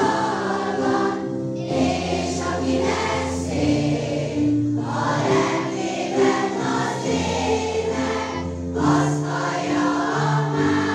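A children's choir of schoolchildren singing a song together, phrase after phrase, over long held low accompanying notes.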